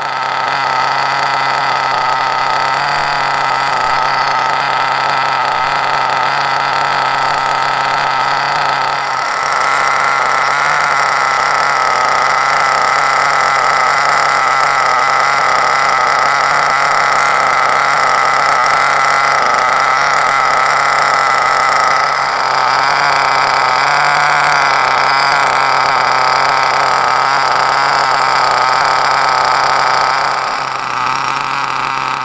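Hobao Mach two-stroke nitro engine idling steadily with the truggy on a stand, on its first break-in tank and set rich as the manual calls for. It gets a little louder about nine seconds in, with a slight shift in its note a little past the middle.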